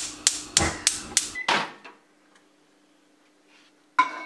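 Gas stove burner igniter clicking rapidly, about three sharp clicks a second for a second and a half, ending in a short whoosh. A faint low hum carries on after it.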